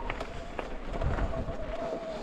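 Mountain bike rolling down a rocky dirt singletrack: tyres crackling over gravel and small stones, with scattered sharp clicks and a faint steady tone underneath.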